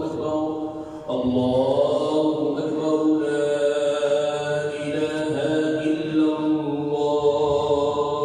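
An imam's voice chanting Quran recitation in long, held melodic notes during congregational prayer. There is a brief break about a second in before the next phrase begins.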